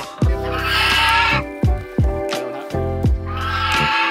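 Background music with a steady beat, over which a white domestic goose gives two harsh calls, one about half a second in and one near the end.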